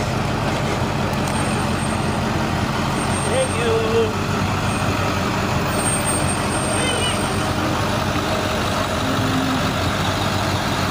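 Large truck engine running steadily at a low idle-like rumble as it rolls slowly past, with voices from people close by.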